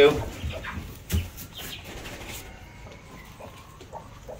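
Hands rustling straw and knocking against a wooden nest box while eggs are slid under a broody hen, with the loudest knock about a second in, and the hen making low sounds.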